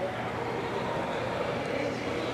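Steady background hum of a large indoor hall, with faint voices murmuring.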